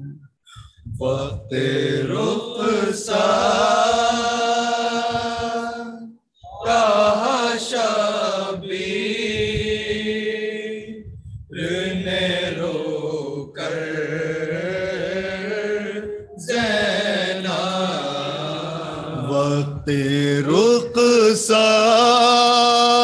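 Men reciting a nauha, a Shia lamentation chant, together into a microphone: long, drawn-out melodic phrases of about five seconds each, with a short breath-pause between them.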